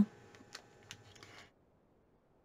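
Faint small ticks and handling noises of hands moving fabric layers on a cutting mat, then dead silence from about halfway through.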